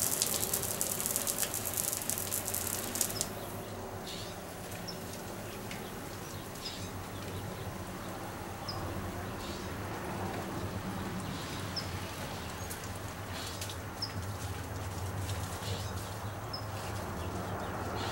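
Garden hose spraying water onto plants: a hiss that is loudest for the first three seconds, then drops to a softer wash. Through the rest, a bird gives short high chirps every second or two.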